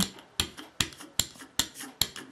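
Soft rubber brayer rolled back and forth on an ink pad to re-ink its barrel, giving a faint rasp and a regular sharp click about two or three times a second.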